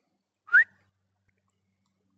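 A single short rising whistle from a man calling his dogs.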